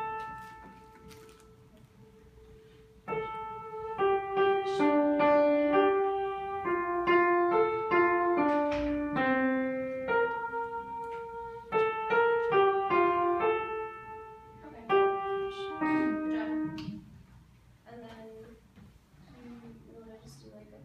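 Upright piano sounding the starting pitch A, held for about three seconds, then playing a passage of chords and moving voice lines for about fourteen seconds before dying away near the end.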